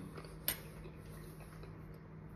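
Quiet room with a faint steady hum, and a single light click of cutlery against a plate about half a second in.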